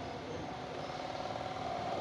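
Faint steady background hum (room tone), with no distinct sound event.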